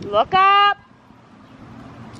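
A single short, loud, high-pitched vocal call that glides up and then holds one note for under half a second, ending about three-quarters of a second in. Faint steady outdoor background follows.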